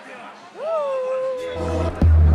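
A high-pitched voice exclaims one long drawn-out vowel that rises and is then held at a steady pitch for over a second. Low bass music comes in near the end.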